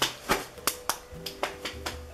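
Stepping: a quick run of about seven sharp claps and hand slaps in an uneven rhythm, with faint music under it.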